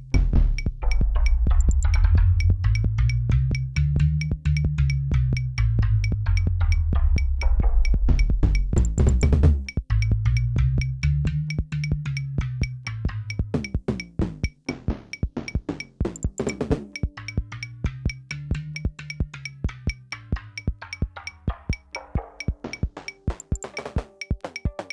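Live-coded electronic music from MiniTidal patterns: a fast, even patter of short clicky percussion hits over a deep synth bass that swells up and falls away in slow waves. It gets quieter about halfway through.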